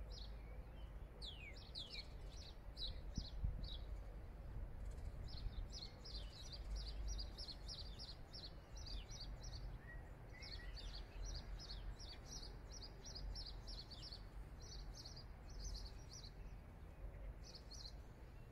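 A bird giving runs of short high chirps, several a second, with brief pauses between the runs, over a low steady rumble of background noise.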